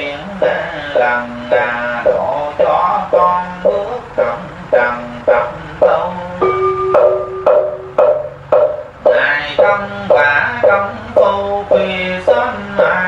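A voice chanting verse in an even rhythm of about two syllables a second, holding one long note about halfway through, over a steady low drone of accompanying music.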